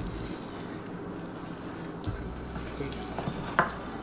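Faint stirring of a sticky flour-and-water bread dough with a metal utensil in a glass bowl, with two light clicks of metal against glass, about two seconds in and near the end.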